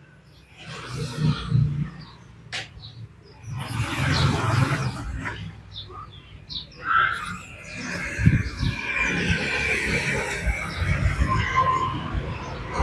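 Road traffic going by on a highway, with motorbikes passing, as uneven noise that rises and falls. A single sharp click comes about two and a half seconds in.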